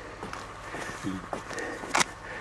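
Quiet outdoor pause in a conversation: faint footsteps on a dirt track and a short vocal sound from a man about a second in.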